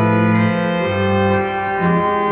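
Two-manual electronic organ being played: sustained chords with the bass notes changing every half second or so.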